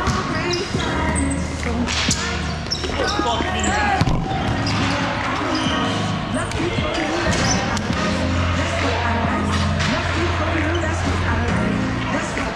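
Volleyball being played on an indoor court: several sharp hits of the ball, the sharpest about four seconds in, over players' voices and background music.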